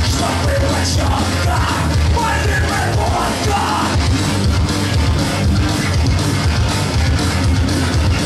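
Punk rock band playing live and loud: electric guitar and bass guitar with a singer yelling into the microphone.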